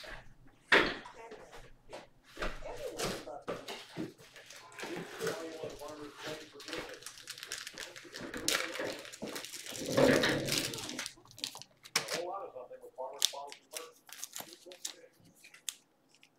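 A person talking, with short crackles of a plastic wrapper being handled near the end.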